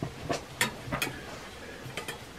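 Boiling water being poured from a small metal camp pot into a freeze-dried meal pouch: a faint pour with a few light clicks of the pot and pouch.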